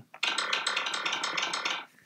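Clavinet patch in the BeatMaker 2 app played on a Korg microKEY Air keyboard shifted to its lowest octave. It gives a dense, buzzy low tone that starts just after the beginning and stops near the end, lasting about a second and a half.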